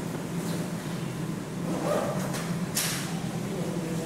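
A steady low background hum, with a brief hiss-like noise just under three seconds in.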